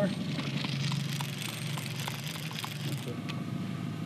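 Boat motor running steadily at trolling speed, a low even hum, with a steady hiss over it that drops away about three seconds in.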